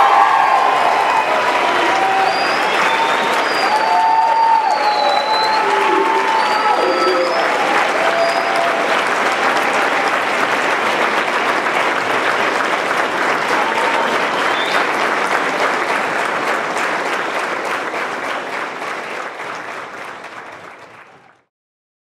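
An audience giving a standing ovation: sustained clapping with scattered cheers and whoops during the first several seconds. The applause fades out near the end.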